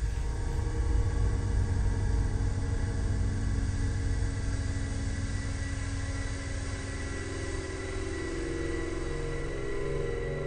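Low rumbling drone of a horror film score, with steady held tones above it; a wavering mid-pitched tone comes in past the middle.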